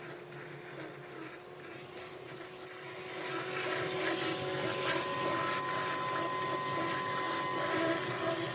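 Hydrovac truck's vacuum sucking water-and-soil slurry up the dig tube from the hole: a steady rush with a faint whine, growing louder about three seconds in.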